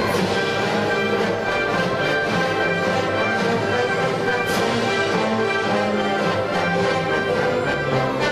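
Symphony orchestra playing classical music with brass, steady and sustained.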